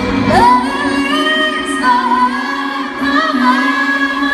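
Female pop singer singing live in an arena, with the sound heard from the seats. She slides up into a held high note about a third of a second in, then sings winding runs and held notes over sustained backing. The low bass drops out for most of the passage.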